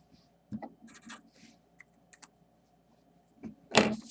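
Felt-tip marker writing on paper in a few short scratchy strokes, with a couple of light ticks. Near the end comes a louder rustling clatter as the paper or marker is handled.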